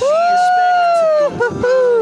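A person's voice holding one long, high, drawn-out note that arches and falls away after about a second, followed by a shorter note that slides down.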